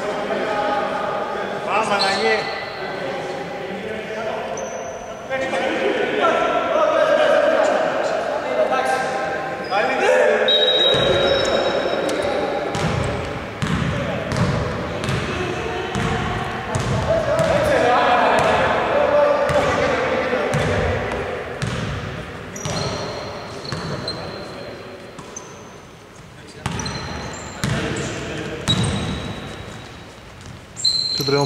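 Basketball bouncing repeatedly on a hardwood gym floor during play, with voices calling out, echoing in a large indoor sports hall.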